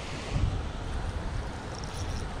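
Wind buffeting the microphone in a steady low rumble, with a short low thump about half a second in.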